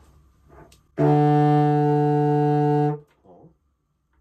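Contrabassoon playing one steady low note of about two seconds, starting about a second in and stopping cleanly. It is the fingering tried for E-flat, which with this instrument and reed gives a note pitched nearest D, so the E-flat does not come out.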